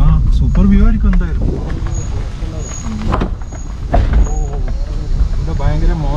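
Low, steady rumble of a Suzuki car's engine and tyres heard from inside the cabin as it crawls over a rough dirt track, with a man talking over it.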